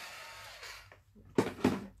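Craft heat tool's fan hissing faintly and dying away in the first second after it is switched off, then two light knocks on the work table.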